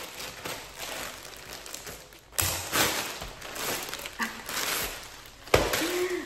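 A plastic mailer bag crinkling as it is cut open with scissors and pulled apart, louder from about two and a half seconds in, with a sharp crackle near the end.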